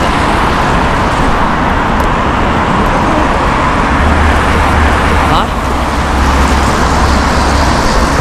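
City street traffic noise, a steady rush of passing cars, with a deeper rumble from about halfway through until near the end.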